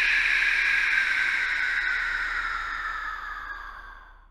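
Logo intro sound effect: a sustained hissing shimmer that slowly sinks in pitch and fades away near the end.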